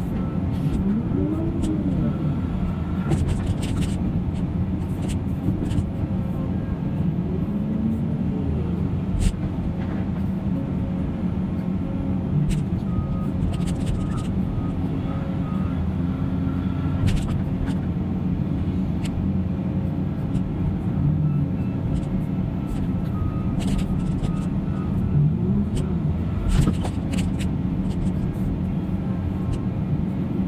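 Heavy diesel machinery running steadily: a Cat 336 hydraulic excavator working beside a McCloskey screener screening demolition debris. The excavator's engine rises and falls in pitch a few times under load, and there are occasional sharp clanks of debris and metal.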